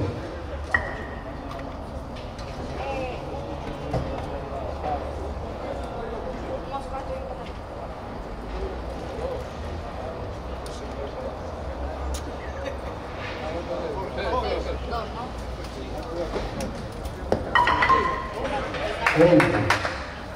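Spectators talking among themselves in a covered bowling hall, a steady murmur of voices. A few sharp knocks and clinks sound over it, and louder voices rise near the end.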